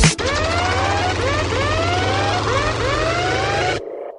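Siren-like sound effect on the soundtrack: repeated rising whoops over a dense steady hiss. It cuts off abruptly near the end, leaving a short fading ring.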